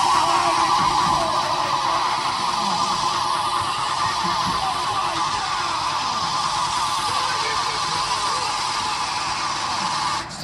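Live electronic music through a festival PA, heard from within the crowd: a sustained tone that has risen and now holds steady as a build-up, over a dense wash of sound. It cuts off suddenly at the end.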